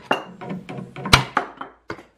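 Glued wooden test samples bonded with PL Subfloor and Deck 400 construction adhesive cracking apart in a brittle failure under a screw-driven test jig: several sharp cracks, each with a short ringing tail.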